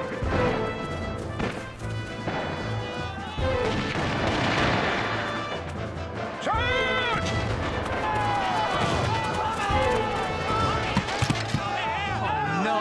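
Dramatic orchestral battle music over the sound effects of an eighteenth-century battle: repeated musket shots and men yelling, with one loud shout a little past the middle.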